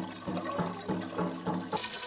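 Water pouring from a tank cart's spout into a metal bucket, splashing steadily as the bucket fills.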